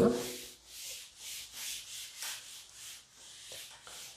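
A cloth duster wiping chalk off a chalkboard: a rhythmic rubbing swish, about two strokes a second.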